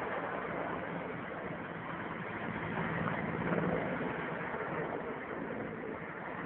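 Steady drone of a low-flying firefighting aircraft's engine over a rushing noise, growing a little louder around the middle.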